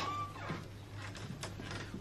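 A short, faint, high-pitched animal call that falls away in pitch near the start, over a steady low hum.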